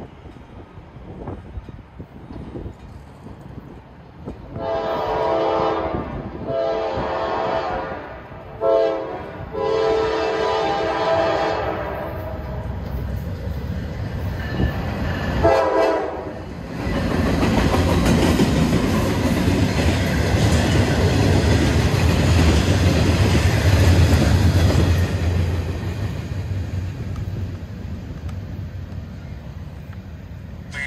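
Norfolk Southern freight train's diesel locomotive horn sounding long, long, short, long, the grade-crossing signal, then one more short blast. The train then rolls past loudly, with locomotive engine rumble and the clatter of wheels on rail from the steel coil cars, easing off toward the end.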